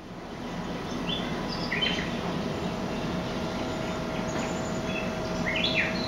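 Birds chirping now and then, a few short high calls over steady background noise.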